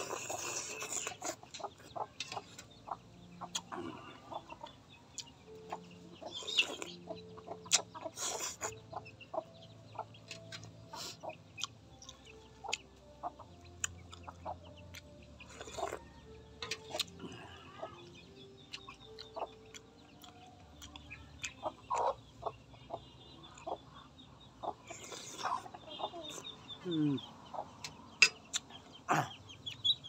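Chickens clucking around a man eating soup: several short slurps from a metal spoon and many small clicks of the spoon against a metal bowl.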